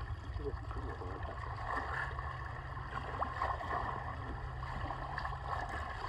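Water lapping and sloshing against a small boat's hull over a steady low rumble, with faint voices in the background.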